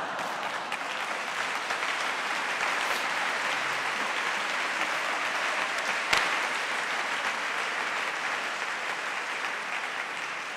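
A large audience applauding, a steady even clatter of many hands, with one sharper crack about six seconds in.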